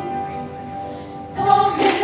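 Children's choir singing: a held chord fades over the first second or so, then the voices come back in louder with a new phrase about a second and a half in.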